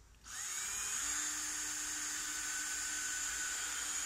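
Cordless drill running under load into a wooden floor-frame joist, starting just after the beginning. Its whine rises briefly as the motor spins up, then holds steady.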